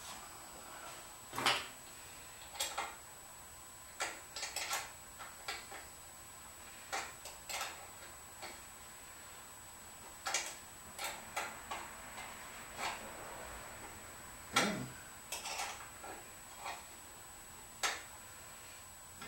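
Irregular light clicks and clinks from hand work at the rear brake's bleeder: tools and fittings handled while the brakes are bled. There are about twenty short taps, with two louder knocks, one early on and one near the end.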